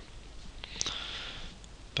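A person breathing in through the nose, a short sniff just under a second in, over faint room hiss.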